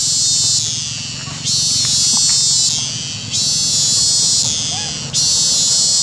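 Cicadas buzzing in repeated surges about every two seconds, each starting abruptly and then fading.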